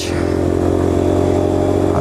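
Yamaha Fazer 250's single-cylinder engine running at a steady cruising speed on the highway, its note holding even, with wind noise rushing over the microphone.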